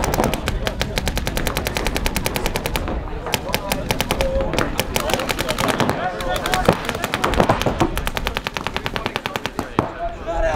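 Paintball markers firing rapid, continuous strings of shots, several guns overlapping, about ten or more shots a second.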